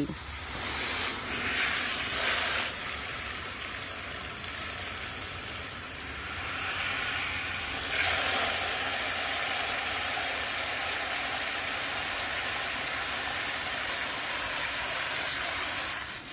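Water from a garden hose spray nozzle splashing steadily onto wet river stones and into a pot of water. It gets louder about halfway through, when the spray is aimed into the filling pot.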